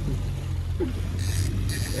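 Boat motor running with a steady low drone. Two short hissing bursts come in the second half.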